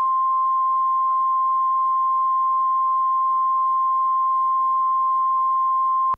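Videotape line-up reference tone played with colour bars: one steady, unchanging sine tone at about 1 kHz, loud and continuous.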